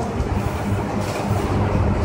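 Steady low rumble with a hiss above it: background room noise with no voice.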